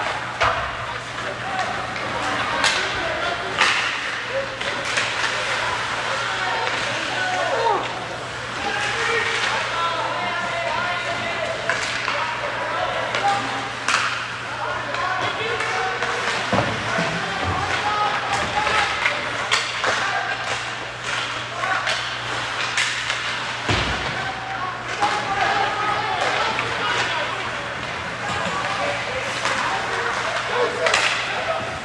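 Ice hockey being played in a rink: indistinct shouting voices of players and spectators with sharp clacks of sticks on the puck and knocks of the puck against the boards, scattered irregularly, over a steady low hum.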